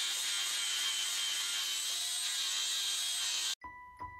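Four-inch angle grinder with a flap disc grinding leftover weld off a steel frame rail, where the factory control-arm brackets were cut away, a steady high grinding. It stops abruptly near the end, and a short chime follows.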